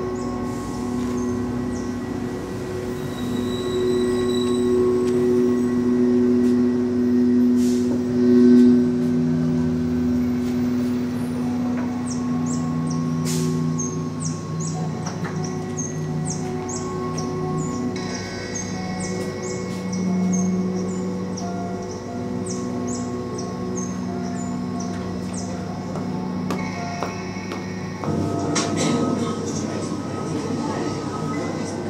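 Experimental electronic drone music built from field recordings processed live: layered sustained low tones that change pitch every few seconds, with a scatter of short high clicks through the middle and later part.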